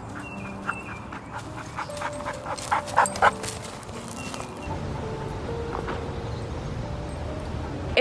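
A dog panting close to the microphone, with a run of short, quick noises over the first few seconds and a low rumble later, over soft background music.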